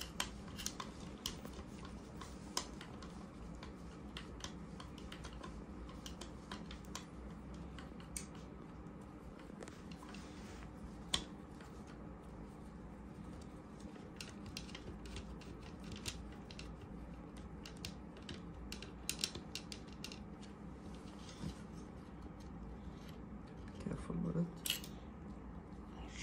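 Scattered light clicks and taps of a screwdriver, screws and housing parts being handled while a small air compressor's cylinder head is taken apart, over a faint steady hum.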